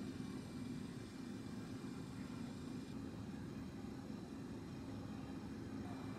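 Car engine running at low speed, heard inside the cabin as a steady low hum.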